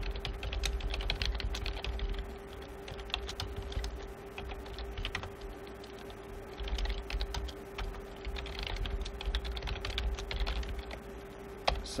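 Computer keyboard typing in short runs of quick key clicks with brief pauses between them. A steady low hum sits underneath.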